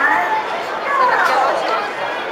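Several high-pitched voices chattering and calling out over one another, like children's voices, with no clear words.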